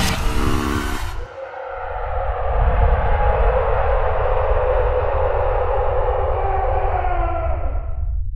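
Trailer music and sound design: the tail of a loud hit fades out in the first second. A held drone of several steady tones then swells in over a low rumble and cuts off suddenly at the very end.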